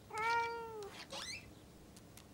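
A cat meows once: one drawn-out meow lasting nearly a second, steady in pitch and dipping at the end. A short, fainter sound follows just after.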